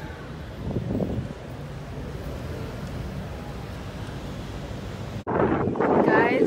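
Outdoor street ambience: wind buffeting the phone's microphone over a steady low traffic rumble. About five seconds in, the sound cuts off abruptly and a louder stretch with people's voices begins.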